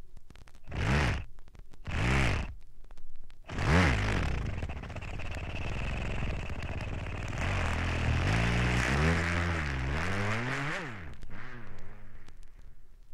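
Scratch-like effects from a vinyl megamix record: three short sweeps rising and falling in pitch, about a second apart. They are followed by a long hissing whoosh with tones sliding up and down, which stops about a second before the end.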